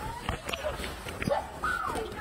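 Macaques giving short pitched calls, one rising call a little past halfway and one rising-and-falling call near the end, among scattered clicks.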